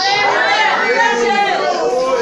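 Many voices of a church congregation calling out together in reply to the preacher, overlapping in a large hall.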